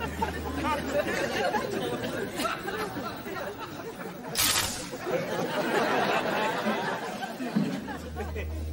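Indistinct chatter of many people in a large hall. About four seconds in comes a brief crackling burst, the static spark as a finger meets the charged metal dome of a Van de Graaff generator.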